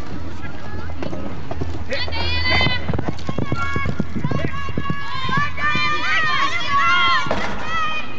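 Hoofbeats of a horse running on a dirt arena through a pole-bending pattern. From about two seconds in until near the end, several high-pitched voices shout over them.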